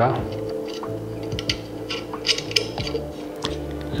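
Soft background music with sustained tones, over a few small metallic clicks as a short screw is handled and fitted into a hole of the filter wheel's camera-side plate.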